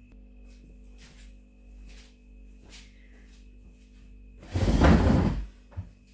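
A few faint clicks, then a loud scraping clatter lasting about a second and a small knock: handling noise from things being moved around on a kitchen table.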